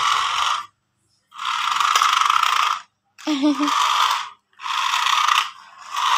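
A toy remote-control car's small electric motor and plastic gears whirring in five short bursts of about a second each, starting and cutting off abruptly with silence in between as the remote's control is pressed and released.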